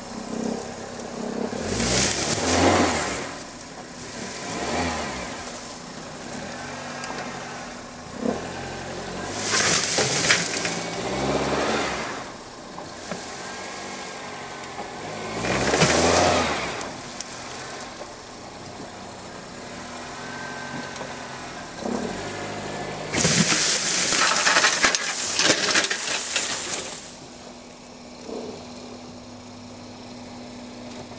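A Toyota car engine strains against a tow load in four rising surges of revving, dropping back between pulls. Each surge brings a loud rush of vines and brush tearing as the tangled load drags through a honeysuckle thicket.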